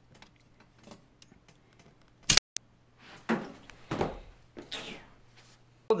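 Plastic Connect Four checkers being handled and dropped into the upright grid: faint clicks, then a loud sharp knock a little over two seconds in, followed by a brief cut-out of the sound. After that come several short rattles as checkers fall down the columns.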